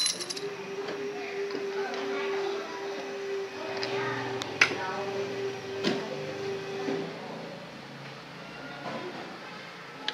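Small steel injection-pump parts being handled on a table: a sharp metallic clink about halfway through and another just over a second later, with fainter ticks around them. A steady hum runs underneath for most of the time and stops a few seconds before the end.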